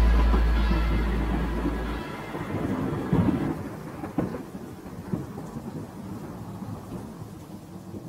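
Thunder-and-rain sound effect ending the track: rumbling thunder with a few sharp cracks about three to five seconds in, fading out. The song's last chord dies away under it, and a deep bass note cuts off about two seconds in.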